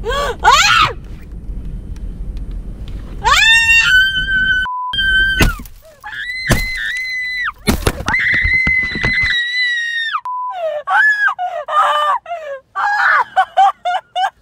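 A woman screaming in long, high-pitched shrieks, with a few sharp blows and breaking glass in the middle as the car's windshield is smashed. Near the end the screams turn shorter and broken.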